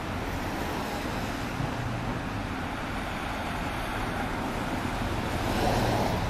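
Street traffic: cars passing with a steady tyre-and-engine hiss and low rumble. One vehicle grows louder near the end.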